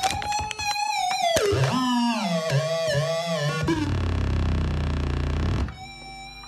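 Electronic synthesizer sounds: wavering, gliding tones for the first few seconds, then a low buzzing drone that drops away briefly near the end.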